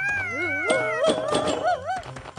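Two cartoon voices wailing together in long, wavering, howl-like cries. One holds a high gliding pitch while the other wobbles up and down, and the wobbling grows faster near the end.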